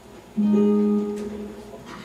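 Mountain dulcimer strummed once: a single chord starts about half a second in and rings on, fading away over the next second and a half.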